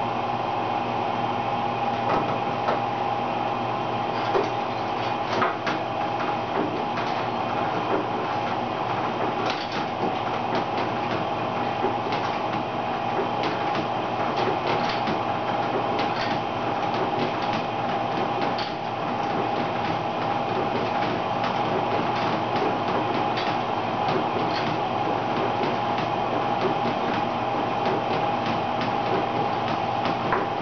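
Elliptical trainer in steady use: a continuous mechanical whir with an even hum, and scattered clicks and knocks from the moving handles and pedals.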